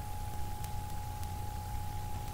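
Room tone: a steady low hum with a thin steady high tone over faint hiss, and a couple of faint ticks.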